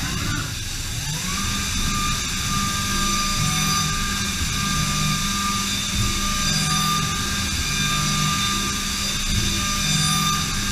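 DMG Mori DMU 65 monoBLOCK 5-axis CNC mill milling aluminum under flood coolant: the spindle rises in pitch over the first second, then holds a steady whine at speed over the hiss of the coolant spray, with the cut's low note coming and going as the cutter moves through the part.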